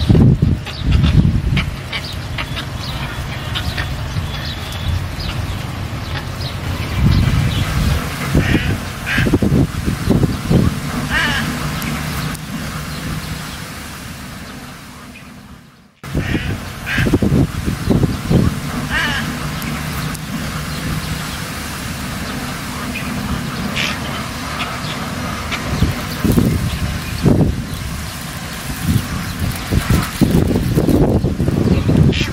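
Ducks quacking now and then over a steady outdoor background. The sound fades down to a sudden dip about halfway through, then picks up again.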